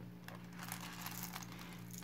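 Faint clicks and rustling of cowrie-shell and white bead necklaces being handled, over a low steady hum.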